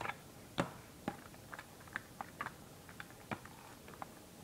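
Plastic LEGO bricks clicking as fingers work and press the lid of a LEGO lockbox into place: scattered light clicks, with a louder one just over half a second in and another a little past three seconds.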